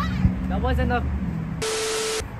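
Voices, then about a second and a half in a burst of TV static hiss with a steady tone beneath it: an edited glitch transition effect. A short knock comes just after the start.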